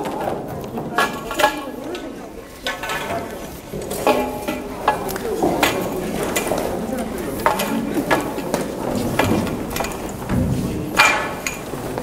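Scattered clinks and knocks of a small sailing dinghy's metal fittings and aluminium spars as it is being rigged, with people talking over it.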